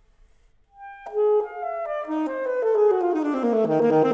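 Alto saxophone and piano playing a slow classical chamber piece. After a short silent pause, the music comes back about a second in with a sharply struck note, then a line of notes falling in pitch and settling onto a low held note near the end.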